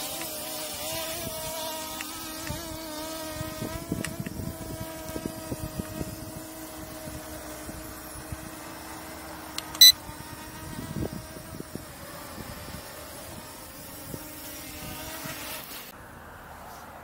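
Dragonfly KK13 quadcopter's brushless motors and propellers buzzing with a steady, several-toned hum as the drone comes down to land, growing fainter and cutting out just before the end as the motors stop on the ground. A brief sharp click about ten seconds in is the loudest sound.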